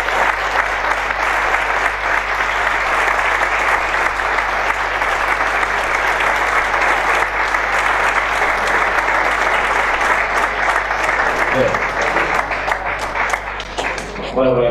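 Audience applauding steadily in a room, a dense clapping that thins out near the end.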